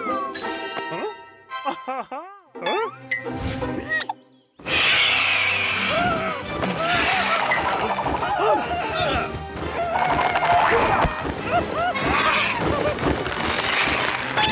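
Cartoon soundtrack: light music with sliding whistle-like glides, a brief drop about four and a half seconds in, then a loud chaotic scuffle of wordless cartoon character cries and sound effects over music.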